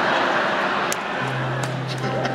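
Electric guitar played live on stage, with a low note held from a little past the middle, over the steady noise of a concert hall audience.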